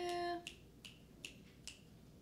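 A voice holds a steady note for about half a second, then four short, sharp clicks follow at a little under half-second intervals.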